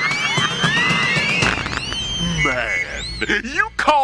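Show soundtrack of music with whistle-like effects swooping up and down in arcs, followed from about halfway through by a character's voice.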